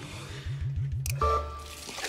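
Background music from the score: a low, wobbling bass figure that repeats about five times a second, then a held low note with higher tones about a second in.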